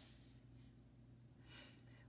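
Near silence: a steady faint room hum, with a faint brief rustle of a paper worksheet being slid into place on a table.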